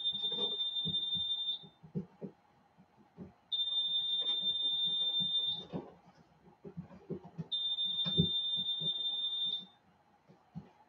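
A high-pitched electronic alarm sounding in long steady beeps, each about two seconds long with two-second gaps, three in all. Beneath the beeps are scattered knocks and rustles from handling.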